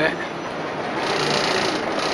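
Running noise of a Venice vaporetto under way: a steady rush of engine and water. About halfway through, a fast, high mechanical rattle joins it.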